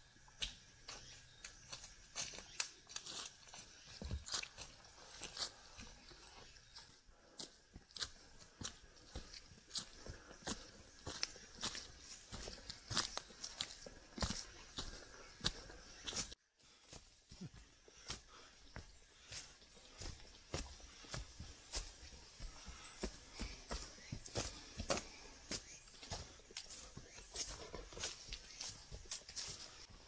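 Footsteps of people walking on a dirt forest trail covered in dry leaves: an irregular run of short, sharp steps, several a second, with a brief drop-out just past halfway.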